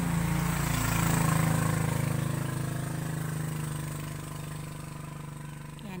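A small engine running steadily, loudest about a second in and then slowly fading away over the next few seconds.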